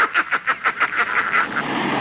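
A rapid, raspy villain's cackle in the Green Goblin voice, about eight or nine quick bursts a second, trailing off into a hoarse hiss near the end.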